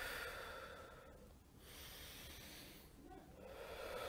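Slow, deep meditative breathing, in through the nose and out through the mouth: a soft rush of air that fades within the first second, and another that swells near the end.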